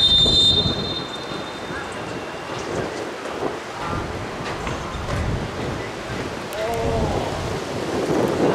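A referee's pea whistle blows once at the very start, a short shrill blast, signalling the restart of play. After it comes a steady rumbling haze of outdoor noise with a few players' shouts.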